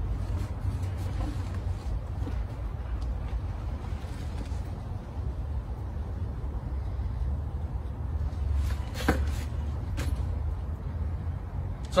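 Steady low outdoor rumble, with a few faint knocks and rustles from a heavy canvas paddleboard backpack being handled; the clearest knock comes about nine seconds in.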